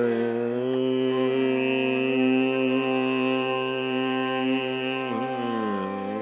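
Carnatic classical music in raga Shuddha Dhanyasi: a single long note held steady, which then bends down and back up in ornamented slides near the end.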